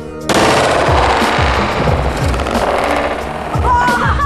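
A rapid string of loud firecracker bangs, starting about a third of a second in and running for about three seconds, as the charge blows the head off a snow sculpture. Music with a heavy beat plays underneath.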